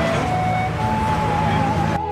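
Street traffic with a car passing close by. Music plays over it: a slow melody of long held notes, stepping up in pitch.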